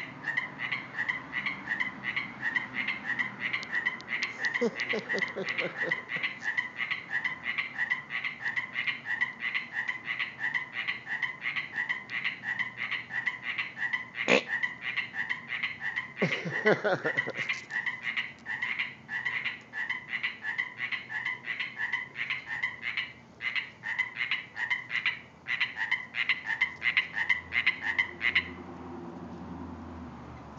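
Frogs calling from the waterfall: a rapid, unbroken series of short high-pitched croaks that stops suddenly near the end. A couple of lower-pitched croaks are mixed in, and there is one sharp click about halfway through.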